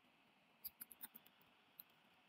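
Near silence with faint computer keyboard keystrokes: a handful of soft clicks in a quick cluster about a second in, and one more near the end.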